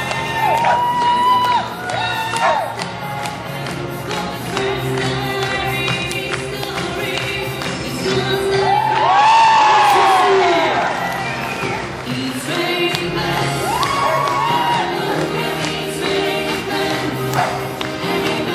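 Upbeat music with a steady beat plays over the hall's sound system while the audience cheers and whoops, swelling loudest about nine seconds in.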